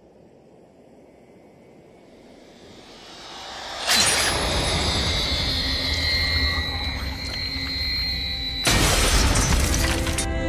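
Cinematic soundtrack: a low rumble swells, then a sudden loud crash about four seconds in leaves high ringing tones hanging, and a second loud shattering crash comes near the end, over dramatic music.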